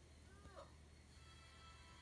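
Faint TV soundtrack: a cartoon character's short nasal 'Ew!', then soft sustained music begins about a second in.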